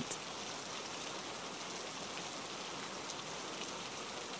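Steady rain falling: an even, continuous hiss of rain on surfaces.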